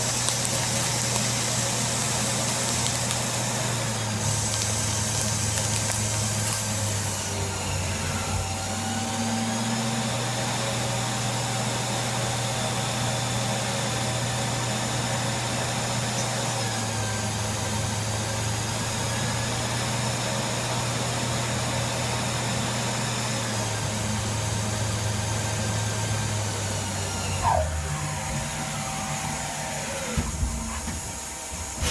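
CNC lathe running, its spindle turning the workpiece while the turning tool cuts along it: a steady mechanical hum with whining tones that slide down and back up in pitch a few times. Near the end the hum shifts and a brief rising tone sounds.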